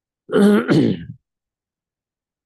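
A man clearing his throat once, in two quick pushes lasting under a second.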